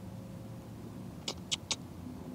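A low steady hum with three short, faint clicks about a second in, each a fraction of a second after the last.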